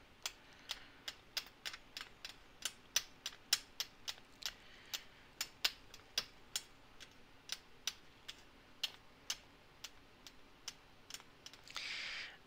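A thin metal blade chopping raw polymer clay into small chips, each down-stroke clicking lightly against the hard work surface, about three or four irregular clicks a second.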